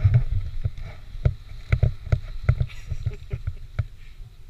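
A run of irregular dull knocks and thumps, about two or three a second, heaviest in the low end.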